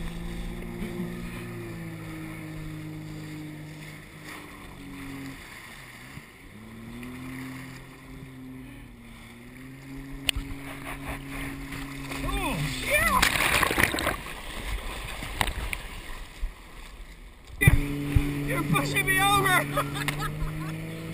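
Towing motorboat's engine droning steadily, its pitch stepping down and back up as the throttle changes, with water rushing under a towed tube. About two-thirds of the way in there is a burst of loud splashing, the engine note drops away for a few seconds, then returns suddenly near the end.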